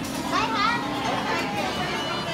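Background chatter of many diners in a busy buffet restaurant, with children's voices among them.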